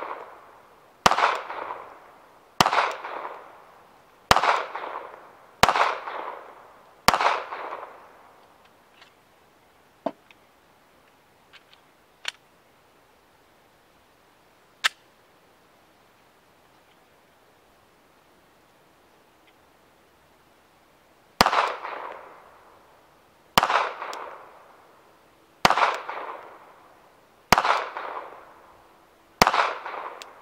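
Glock 42 subcompact pistol in .380 ACP firing single shots: five about a second and a half apart, then after a pause of some fourteen seconds, five more about two seconds apart. Each shot rings out with a short echo. In the pause there are a few light clicks and knocks as the pistol is reloaded.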